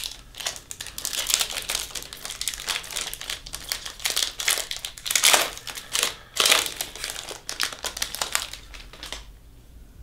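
Foil wrapper of a baseball card pack being torn open and crinkled by hand: a dense run of crackles, loudest about halfway through, that stops about a second before the end.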